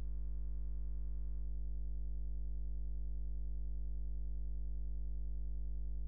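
A steady, deep electronic hum: a synthesized drone with a stack of even overtones. Its higher overtones die away about a second and a half in, leaving the low tone.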